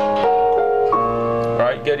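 Electronic keyboard's piano voice playing held open-voiced chords with the melody note on top. The chord changes about a quarter second in and again about a second in, and the notes ring out until a man's voice comes in near the end.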